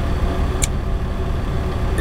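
Steady low rumble of a parked 2017 International ProStar semi truck idling, heard from inside its sleeper cab, with one short click a little after the start.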